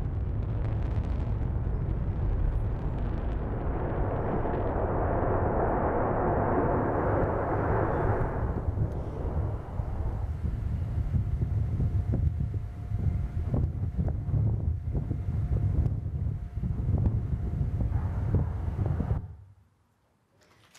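Rocket engine of a SpaceX reusable test rocket firing at liftoff, played from a video over a hall's loudspeakers: a continuous deep rumble with a louder rushing roar in the middle and crackling toward the end. It cuts off suddenly near the end.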